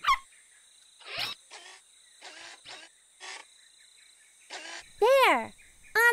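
Night-time insect chirring as a steady high background, with a few short soft clicks and rustles. About five seconds in comes one short, loud vocal sound that rises and then falls in pitch.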